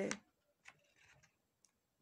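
A woman's voice finishes a word, then a pause with two faint clicks about a second apart.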